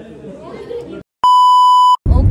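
A loud, steady, single-pitched electronic beep, the classic censor-bleep tone, edited into the soundtrack for about three-quarters of a second after a brief dead silence. Faint chatter comes before it in the first second.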